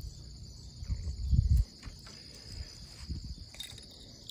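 A steady high-pitched insect chorus, with a brief low rumble on the microphone about a second in.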